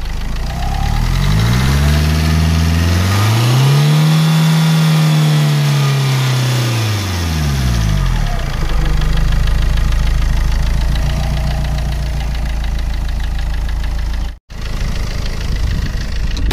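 Tata Vista's Quadrajet diesel engine idling, heard from the open engine bay; about a second and a half in it is revved once, rising smoothly and falling back to idle by about eight seconds, then idles steadily. The sound breaks off for a moment near the end.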